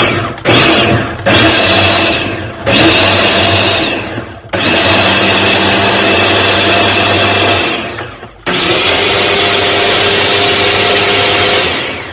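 Ninja countertop blender pulsed to blend a thick fruit-and-yogurt smoothie. It runs in a series of loud bursts, each spinning up with a rising whine and winding down again, the bursts getting longer until the last two run about three seconds each.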